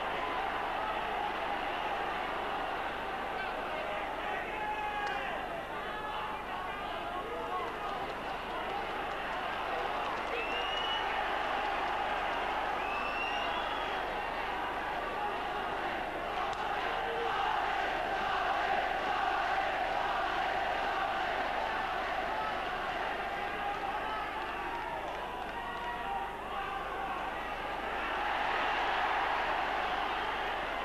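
Large boxing-arena crowd cheering and shouting steadily, urging a boxer on, swelling louder around the middle and again near the end.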